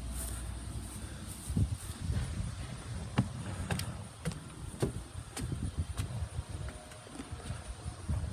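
Footsteps on wooden deck boards, a person walking at a steady pace of a little under two steps a second, each step a sharp knock; the steps fade out about six seconds in.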